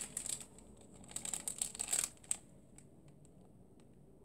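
Clear plastic wrappers of tea sachets crinkling as they are handled, in two spells: a short one at the start and a longer one of about a second, ending about two seconds in.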